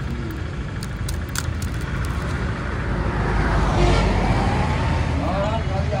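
Road traffic passing close by, a steady rumble that swells as a vehicle goes past about three to four seconds in.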